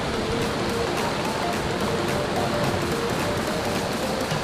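Steady rushing of a rocky stream and small waterfall, with quiet background music laid over it.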